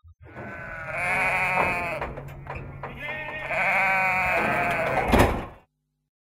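Sheep bleating: two long, quavering bleats, followed by a sharp knock about five seconds in, after which the sound cuts off suddenly.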